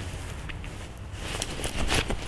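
Nylon jacket rustling, with a few faint clicks.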